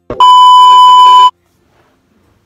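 A short click, then one loud, steady electronic beep lasting about a second at a single pitch, cutting off abruptly: the closing tone of a film-leader countdown sound effect.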